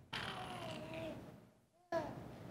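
Opening of a recording played back over a room's speakers: a single sliding pitched note that falls slowly and fades out about a second and a half in, followed by a brief near-silent gap.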